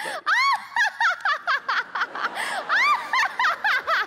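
A woman laughing hard: a run of high-pitched, arching bursts, several a second.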